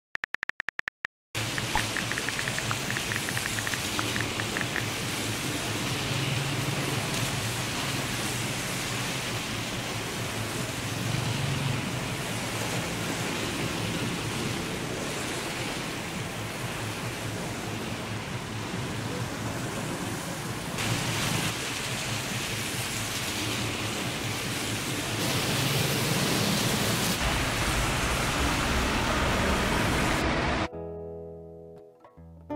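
Steady rain falling, an even dense hiss that grows louder in the last few seconds. It opens with a brief stutter of rapid clicks.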